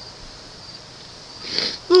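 A man crying: a sobbing, breathy intake of breath about a second and a half in, then the start of a loud wailing "oh" that falls in pitch at the very end.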